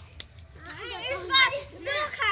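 A group of children's voices calling out and chattering, starting about half a second in.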